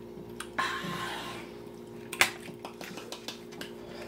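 Clicks and crackles of a plastic blister-pack card being handled, with a rustle early on and a sharp click about two seconds in, over a faint steady hum.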